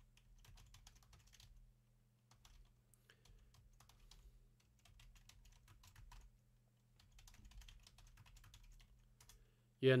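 Typing on a computer keyboard: quick runs of faint key clicks, broken by short pauses about two seconds in and again around seven seconds, over a faint steady low hum.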